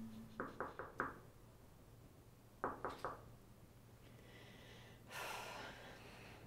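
Knuckles knocking on a hotel room door: four quick raps, a pause of about a second and a half, then three more. A short soft noise follows near the end.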